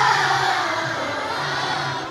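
A group of young children shouting together, loud at the start and fading away, over a backing music track.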